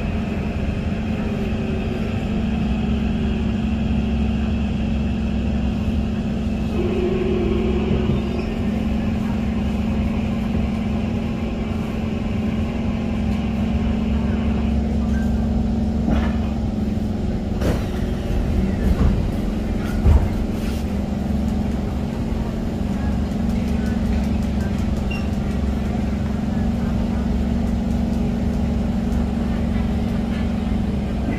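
Cabin sound of a Kawasaki C151 MRT train slowing into a station: a steady low running hum with a high steady whine that cuts out about halfway through. Scattered clicks and knocks follow as the train comes to a stop.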